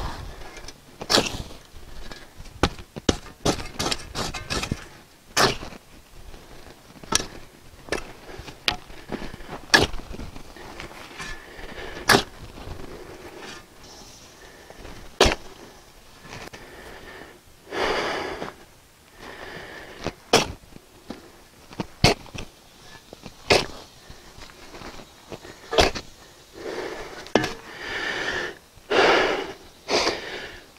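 Steel shovel scooping dry, crumbly clay soil and tipping it into a hole: sharp scrapes and chinks of the blade every second or two, with the rustle of falling dirt.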